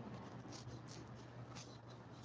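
Faint rustling and scratching of a phone being handled, a few soft scrapes over a steady low hum.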